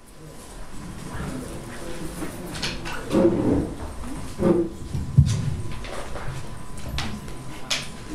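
A few short bursts of low voices, with several sharp knocks and clicks of a microphone and its boom stand being handled and adjusted.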